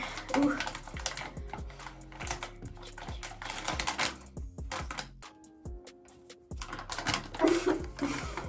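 Close, crinkly crackling of a soft plastic packet of makeup wipes being handled, its flap peeled open and a wipe pulled out, played up as ASMR. The crackles ease off around the middle and pick up again near the end.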